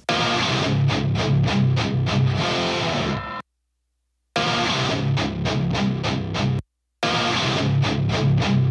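Heavy distorted electric rhythm guitars playing a riff in a multitrack mix playback, the main guitars with a filtered extra guitar track layered against them. Playback cuts to dead silence for about a second partway through, and briefly again near the end.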